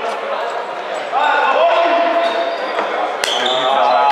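Handball game on an indoor wooden court: the ball bouncing and shoes squeaking, echoing in a large sports hall. A drawn-out shout rises about a second in, and a brief high squeak comes near the end.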